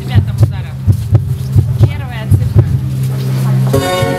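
Amplified heartbeat sound from the Emograph installation's speakers: quick low thumps, about two to three a second, over a steady low hum, with a few high wavering glides above them. Near the end the hum cuts off and heartbeat-driven music with sustained notes begins.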